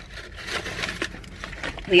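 Paper shopping bag rustling and crinkling as it is handled, with a few small clicks.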